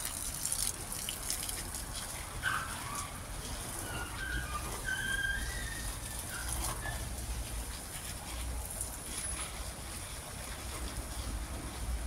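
Water spraying from a garden hose onto plants and leaf litter, a steady hiss, with a few short high chirps in the first half.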